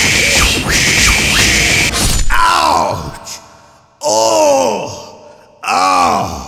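A loud, harsh noisy burst lasting about two seconds, then a man's voice letting out three drawn-out pained groans that rise and fall in pitch, done as a cartoon villain cut by a sword.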